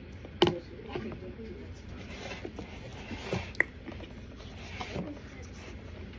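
Close-up mouth sounds of someone chewing raw cornstarch: soft, squishy, crackly chewing, with a sharp click about half a second in and another about three and a half seconds in.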